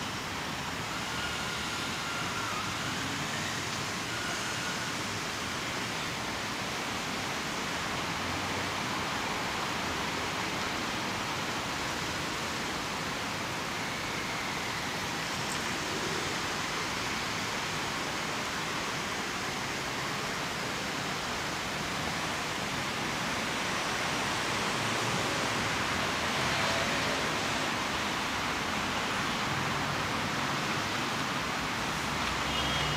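Steady city street ambience: a continuous hiss of road traffic, swelling a little near the end.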